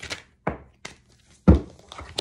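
Several dull knocks and thunks, the loudest about one and a half seconds in, from a deck of oracle cards being handled.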